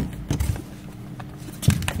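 A folded selfie lamp stand being handled and worked at its stuck clip: a sharp click at the start, a few low bumps, and a louder knock near the end.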